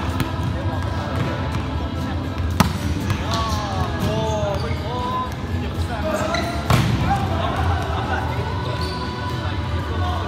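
Players' voices echoing in a large gym during a volleyball rally, with two sharp slaps of the ball being struck, about two and a half seconds in and again near seven seconds.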